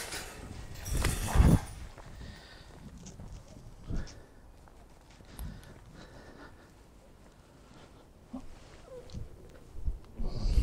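Footsteps on rough, overgrown ground, with a louder rustle about a second in and a few quieter thuds after it.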